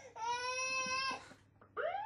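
A man's voice imitating a police siren: one held wailing note for about a second, a short pause, then a rising wail near the end.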